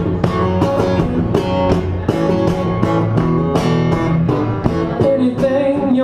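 Acoustic guitar strummed in a steady rhythm, about three strokes a second: an instrumental break between the sung lines of a song.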